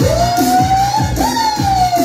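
Loud dance music for a flashmob routine: a steady kick drum about two beats a second under a long high tone that slides up and then falls away.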